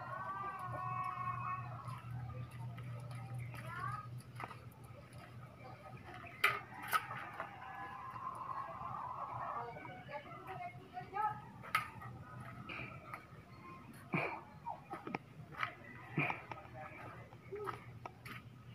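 Indistinct background voices of people talking, under a steady low hum that fades out around the middle, with a few sharp clicks scattered through.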